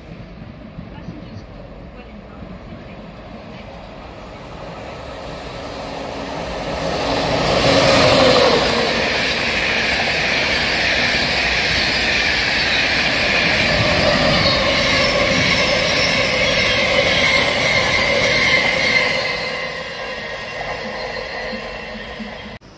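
LNER intercity passenger train running through the station at speed. The noise builds over a few seconds, stays loud for about ten seconds as the carriages go by, then fades near the end.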